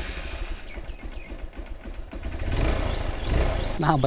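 Motorcycle engine running at idle, with a steady low rumble that grows louder about halfway through.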